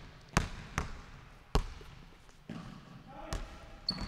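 Basketball bouncing on a hardwood gym floor in a large hall: about four separate, unevenly spaced bounces with echoing tails, the loudest two about a second and a half in and near the start. A short high squeak comes just before the end.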